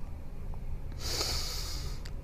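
A man breathing in through the nose: one hissing inhale lasting about a second, starting halfway through.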